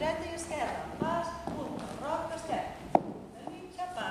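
A woman talking, with the knock of cowboy-boot heels on the stage floor as she steps; one sharp heel strike stands out about three seconds in.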